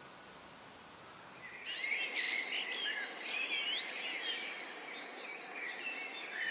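Songbirds chirping and singing, several calls overlapping in quick, high whistles and trills. They start about a second and a half in, after a faint hiss.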